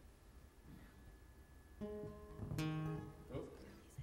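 Acoustic guitar strummed: a chord about two seconds in, then a louder strum just after that rings for under a second and fades.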